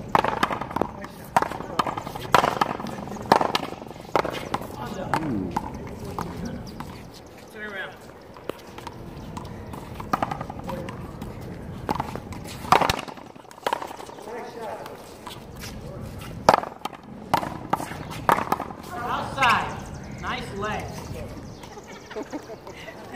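One-wall paddleball being hit: a series of sharp cracks at irregular intervals as the ball comes off solid paddles and the concrete wall, with short bits of players' voices between the hits.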